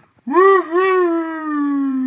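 A long dog-like howl: one drawn-out call that wavers briefly near the start and then slowly falls in pitch.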